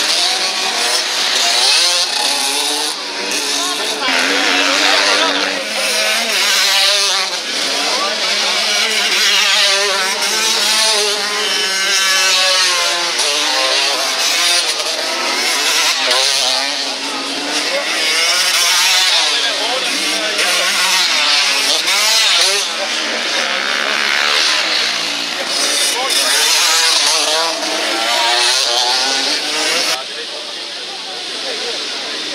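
Several motocross motorcycles racing past on a dirt track, their engines revving up and down over and over in a dense, overlapping chorus of rising and falling pitches.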